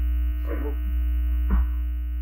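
Steady low electrical hum with steady buzzing tones above it in the meeting's microphone audio. A short voice sound comes about half a second in, and a brief thump about a second and a half in.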